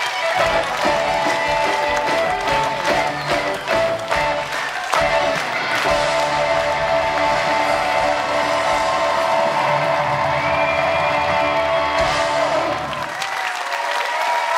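Theatre audience applauding over loud music with sustained chords. The music drops away about a second before the end while the clapping goes on.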